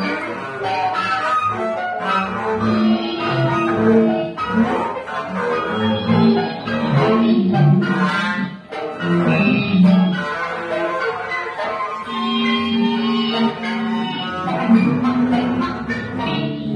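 Free improvisation on double bass played with a bow, alongside guitar: long held low bowed notes, one after another, under busier, scratchier higher tones.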